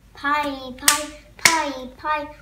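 A young boy's voice with two sharp hand claps about half a second apart near the middle; the claps are the loudest sounds.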